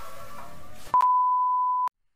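Background music fading out, then a single steady electronic beep tone held for about a second, which cuts off abruptly.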